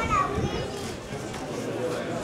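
Crowd of spectators talking over one another, with a brief high voice near the start.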